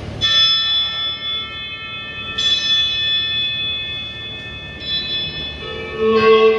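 A bell tolling three times, about two and a half seconds apart, each stroke ringing on until the next.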